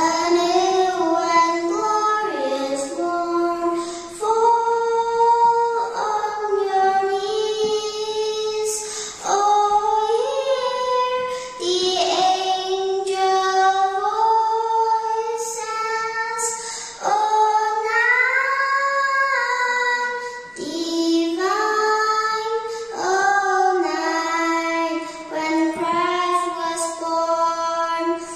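A young girl singing solo into a microphone, in phrases of long held notes with short breaks between them.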